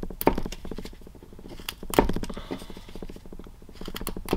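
A carving knife slicing into a block of basswood (linden), with sharp cracks as the blade cuts through the grain: the loudest about a quarter second in and at about two seconds, with scraping between them. The wood cuts a bit rough.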